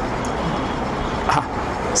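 Steady background rumble and hiss with no clear source, fairly strong and even throughout.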